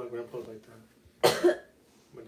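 A person coughing, two quick harsh bursts a little over a second in, after the tail of a spoken phrase.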